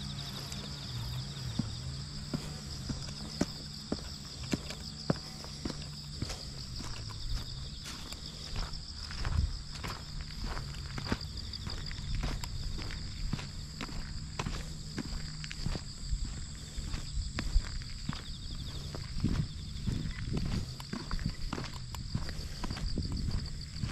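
Footsteps on a paved path at a steady walking pace, about two a second, over the steady high chirping of autumn insects.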